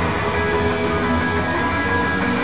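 Rock band playing live: electric guitars and a drum kit, steady and loud throughout.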